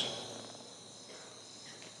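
Faint, steady high-pitched chirring of crickets under quiet room tone, with the tail of a spoken word fading out at the start.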